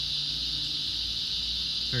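A chorus of cicadas droning in one steady, high, unbroken band, strong and noisy, with a faint low hum underneath.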